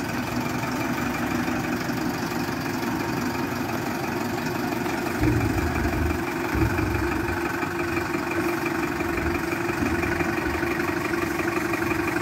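Heavy diesel engine idling steadily, with two brief low rumbles about five and a half and seven seconds in.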